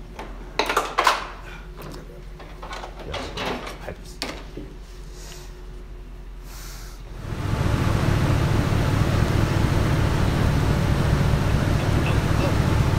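Light clicks and knocks of hands working on the coil-pack wiring in the engine bay. About seven seconds in, a steady loud rumble starts: the Nissan SR20 engine running.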